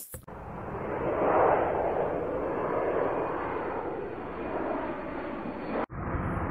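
A steady rushing noise, laid in during editing over a transition between clips. It swells over the first second and a half, holds, and cuts off abruptly just before the end.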